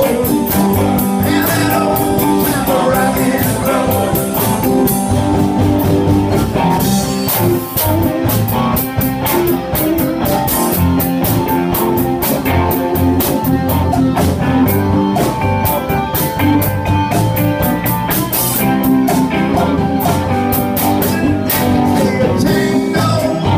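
Live rock band playing loud: electric guitars over a drum kit, with a steady run of cymbal hits.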